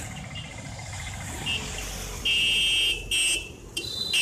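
Street traffic rumbling with a vehicle horn sounding: one steady blast of under a second about two seconds in, then a shorter toot just after.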